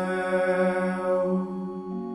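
Hymn singing in chant style: a voice holds the final note of the stanza over a steady sustained keyboard accompaniment. The voice stops just before the end, leaving the instrument's chord sounding alone.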